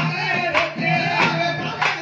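Tamil folk devotional song praising the goddess Mariamman: a man sings over drum strokes that fall evenly about every two-thirds of a second.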